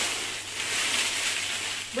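Thin plastic shopping bag rustling and crinkling steadily as it is handled.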